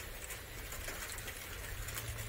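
Light rain falling, a soft steady patter of drops, over a low steady rumble.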